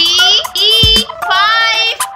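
Children's song: a high-pitched, child-like voice sings three drawn-out notes over electronic backing music with a kick drum.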